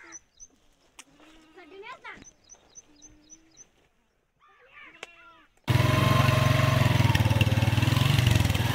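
Quiet open air with a bird's short high chirps repeating and a few brief voices, then, near six seconds in, a small motorcycle engine cuts in suddenly and runs steadily and loudly.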